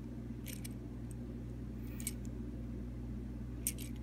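A few faint, brief clicks and rustles from small plastic toy-car parts being handled and fitted onto a plastic rod, in three short clusters over a steady low hum.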